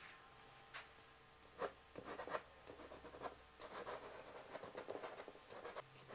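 Soft pastel stick stroking across paper, faint irregular scratchy strokes that start about a second and a half in, as colour is blocked in over a sketch.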